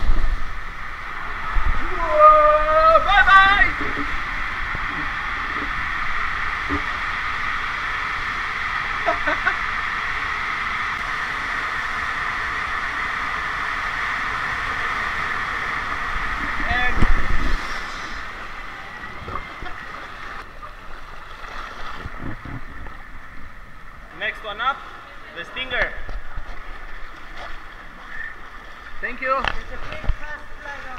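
Steady rushing of water as a rider slides down an enclosed water slide, with a shout near the start. The rush surges briefly about 17 seconds in, then cuts down to a quieter, uneven background.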